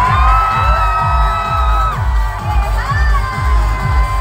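Live pop music with a heavy bass beat played loud through a concert PA, with the crowd cheering and shouting over it. A long high voice is held for about the first two seconds.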